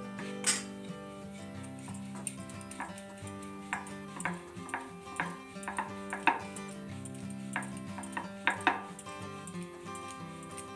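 Background music with a steady melody, over irregular sharp wooden knocks and clacks from a wooden rolling pin working paratha dough on a round board. The knocks are the loudest sounds.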